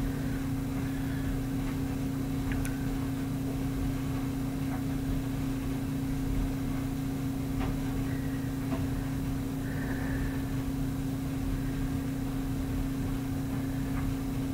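Steady low hum with one constant tone, with a few faint clicks.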